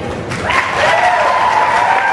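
Audience applauding, starting about half a second in, with one long high cheer held over the clapping.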